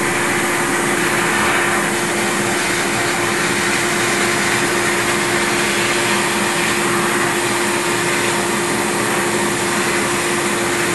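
Steel shot blasting from a quarter-inch nozzle in a blast cabinet: a steady hiss of air and shot hitting a waffle iron, stripping off its Teflon coating. A steady low hum runs underneath.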